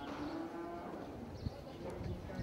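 Holstein-Friesian dairy cow mooing, one call lasting nearly a second, followed by a single sharp knock about halfway through.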